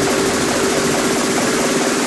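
Psytrance synth passage in a breakdown: a dense, buzzing, whooshing synth texture with a pulsing mid-range drone, the bass and kick thinned out.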